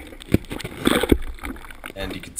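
GoPro camera in its housing being lowered and wiggled in an ice-fishing hole: water sloshing, with a few irregular knocks and bumps against the camera.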